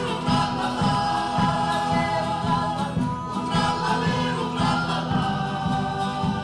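Male choir singing a folk song in several-part harmony, with sustained chords, accompanied by strummed acoustic guitars.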